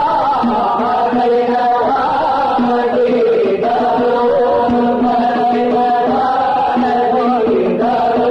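Sung Islamic nasheed in Aleppine style: a wavering, ornamented vocal melody over a held lower note.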